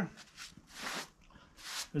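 A hand brush sweeping sawdust off a freshly sawn board: about three soft, short swishes.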